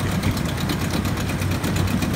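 Yamaha-built Mariner 8 HP two-stroke outboard, twin-cylinder, idling low and steady in reverse gear with an even, fast firing pulse.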